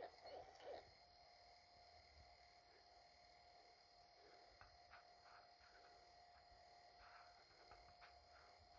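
Near silence: room tone with a faint steady high hum, and a few soft brief sounds in the first second.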